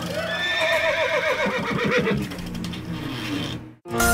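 A horse's whinny, quavering and falling in pitch over about two seconds, then trailing off.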